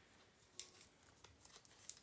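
Tarot cards being handled: three faint, sharp clicks and slight rustles of cards.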